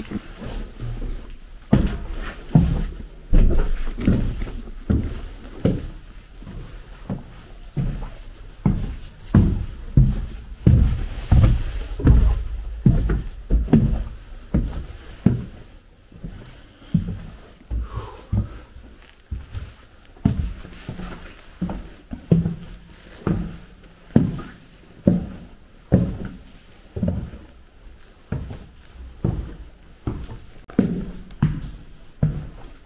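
Footsteps on bare wooden floorboards, a little over one step a second, each a dull thud.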